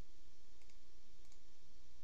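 A few faint computer mouse clicks over a steady low hum of room noise.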